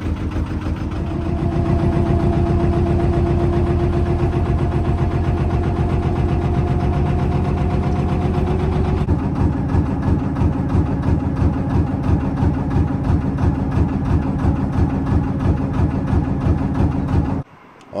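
Narrowboat diesel engine running steadily at cruising speed, an even, rhythmic chugging beat. Its sound changes about halfway through, and it cuts off abruptly just before the end.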